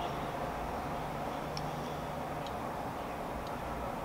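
Quiet, steady room hum with a few faint, light ticks spaced about a second apart.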